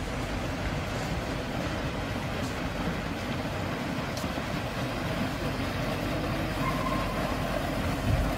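A steady low rumbling background noise at an even level, with a few faint clicks and a brief faint tone near the end.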